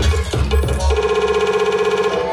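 Hip-hop music from the DJ over the venue's sound system, played loud. About a second in, the bass and drums drop out, leaving a fast repeating synth note.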